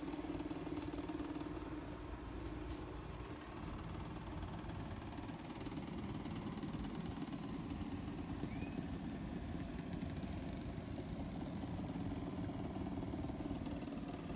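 Faint, steady low hum of a running motor, its tone fading after about two seconds.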